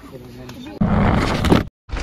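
Mountain bike riding down a dirt trail, heard through a helmet-mounted camera: a loud rush of wind and tyre noise that starts suddenly about a second in and cuts off abruptly just before the end.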